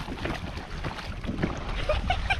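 Footsteps wading through shallow water, sloshing irregularly, with wind noise on the microphone.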